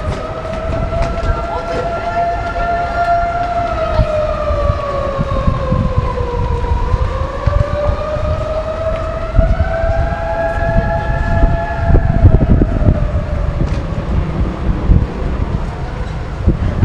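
A siren wailing, its pitch sliding slowly down and back up before it fades, over the steady low rumble of street traffic.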